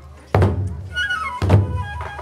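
Two strokes on large barrel-shaped kagura drums (taiko), about a second apart, each ringing on. Over the second stroke a kagura bamboo flute (fue) plays a short phrase that steps downward in pitch.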